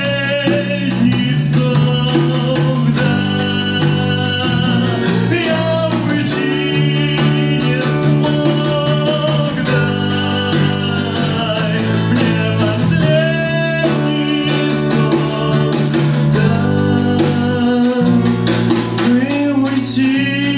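Live song: a singer with wavering held notes over a strummed acoustic guitar, with a drum kit played behind.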